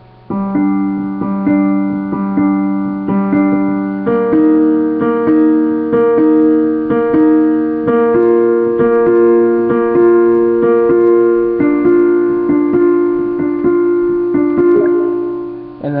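Piano playing a slow left-hand pattern of two-note figures, about one a second, each repeated four times: G–D, then B-flat–E-flat from about 4 seconds in, B-flat–F from about 8 seconds, and D–F from about 12 seconds.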